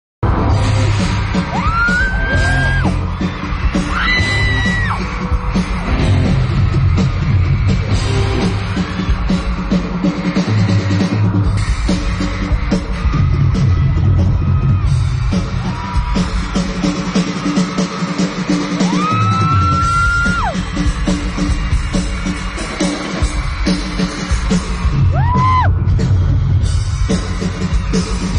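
Live drum kit played hard in a rock drum solo, loud and close, with high-pitched screams from the crowd rising over it several times.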